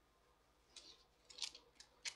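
Thin Bible pages being leafed through: a few faint, short paper rustles and flicks in the second half, the loudest about one and a half seconds in.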